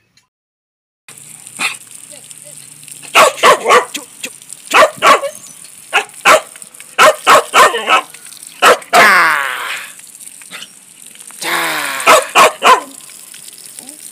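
A tan hunting dog barking over and over, starting about a second in, mostly in quick runs of two or three barks. About nine seconds in it gives a longer call that falls in pitch, and near the end another drawn-out call mixed with barks.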